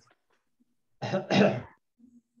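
A person clearing their throat in two short bursts about a second in, picked up by an open video-call microphone.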